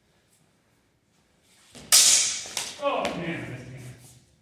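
Longsword sparring exchange: a sudden loud hit about two seconds in, then a couple of sharp clicks, then a person's voice calling out and falling in pitch.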